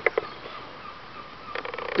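A sharp click, then a low, even outdoor background, with a person starting to laugh in quick bursts near the end.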